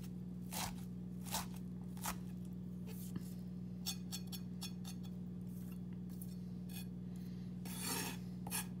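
A chef's knife chopping butterbur buds (fukinoto) on a wooden cutting board, a crisp cut about once a second with a quick run of cuts near the end. Between the cuts the blade scrapes across the board as the chopped pieces are gathered.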